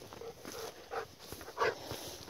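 A dog panting softly in a handful of short, faint breaths.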